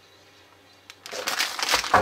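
Near silence for about a second, then crinkling of a plastic-film cookie package as it is handled and set down on a table.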